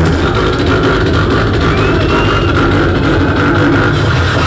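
Live beatboxing amplified through a club sound system: a loud, unbroken stream of vocal bass and percussion sounds with heavy low end.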